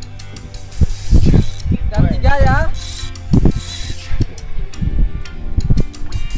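Fishing reel being cranked under load against a hooked amberjack on a bent jigging rod, giving irregular mechanical ratcheting clicks.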